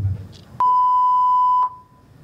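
A single loud, steady electronic beep at one fixed pitch, about a second long, starting about half a second in and cutting off sharply.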